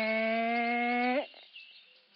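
A woman's long strained hum on one held note, slowly rising in pitch, voicing the effort of a stuck tent zipper; it breaks off about a second in.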